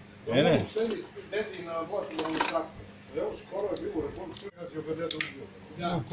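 Men's voices talking, with a few light metallic clicks and clinks of hand tools against engine parts.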